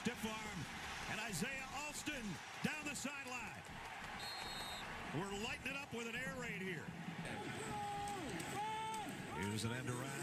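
Football game TV broadcast playing quietly: male commentators talking over a background haze of stadium crowd noise, with a few knocks and a brief high steady tone about four seconds in.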